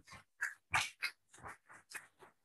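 Audience applause, heard as a quick, uneven run of separate claps, several a second.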